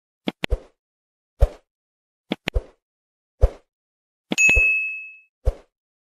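Sound effects of a subscribe-button animation: a run of short clicks, some in quick pairs, and about four seconds in a notification-bell ding that rings for about a second.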